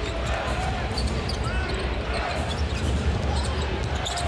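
Basketball game sound in a large arena: steady crowd noise with a basketball dribbling on the hardwood court.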